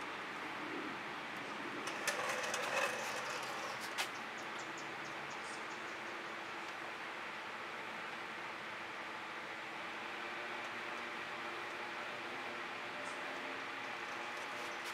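Steady background hum. A brief clatter of small clicks comes about two seconds in, and one sharp click follows at about four seconds.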